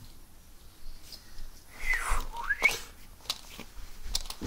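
A short high whistle about two seconds in that slides down and then back up, with scattered soft knocks and footfalls on carpet as a toy monster truck is handled.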